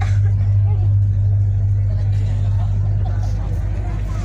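A steady low hum under faint crowd chatter.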